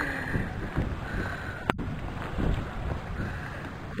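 Wind buffeting the microphone with water sloshing against the hull of a small boat on choppy sea, and one sharp click about one and three-quarter seconds in.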